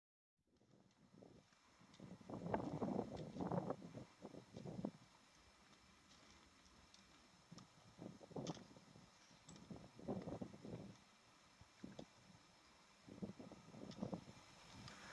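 Faint, irregular footsteps crunching and scuffing on loose rock and gravel, with small clicks of stones knocked underfoot.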